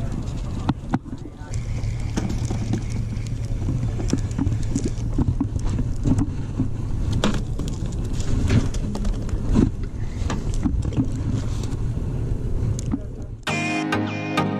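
Outdoor ambience picked up by a body-worn camera: a steady low rumble with scattered clicks and knocks from the camera being handled and moved. Music starts near the end.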